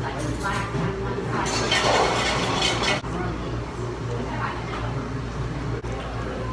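Restaurant room sound: a steady low hum with indistinct voices, and a rush of noise lasting about a second and a half near the middle.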